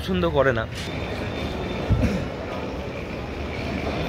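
Steady rumbling background noise on a railway station platform, with a short low thud about two seconds in. A few words of speech come first.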